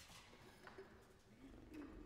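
Near silence: hall room tone with a few faint, soft low sounds.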